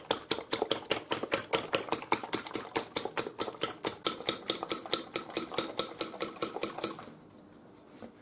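A metal fork beating eggs on a ceramic plate, clicking against the plate about six times a second, fast and even. The eggs are being whipped until they double in volume. The beating stops about seven seconds in.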